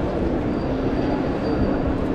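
Steady hum of a large railway terminus concourse: a constant low drone over a dense wash of noise, with a faint thin high whine joining about half a second in.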